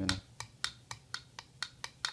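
Sharp metal clicks, about four a second, as pliers rock a partly punched-out knockout back and forth in a galvanized steel switch box, working the disc loose.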